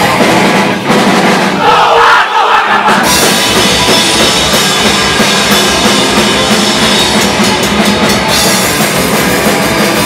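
Live punk band playing loud with distorted electric guitars, bass and drum kit. About two seconds in the low end drops out briefly, then the full band comes back in.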